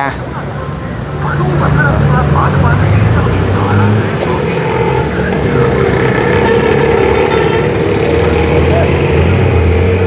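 Diesel bus engines running close by on a busy street: a steady low drone that swells about a second in, with traffic noise and voices around it.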